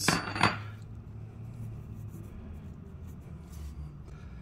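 A steel wrench clinks against metal a few times in the first half second, the sharpest clink about half a second in, as it comes off the chain-adjuster lock nut. A low steady hum follows.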